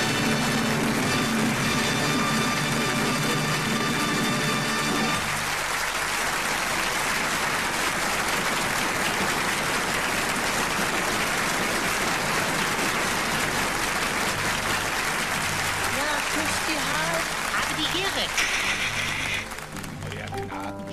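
A song ends on a held chord with audience applause underneath. The music stops about five seconds in, and the applause carries on alone, with a few voices calling out near the end.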